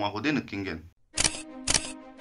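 Camera shutter sound effect: two sharp clicks about half a second apart, starting about a second in.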